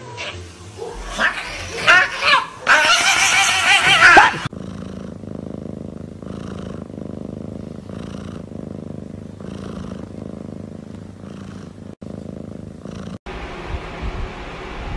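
A domestic cat purring steadily, the purr swelling with each breath about once a second. Before it, in the first few seconds, there are loud wavering cries.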